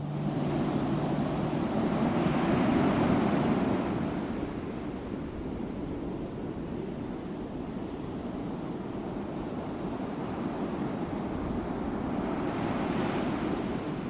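Sea waves washing on a shore: a steady rushing noise that swells about two to three seconds in and again near the end. The last guitar chord dies away in the first second or so.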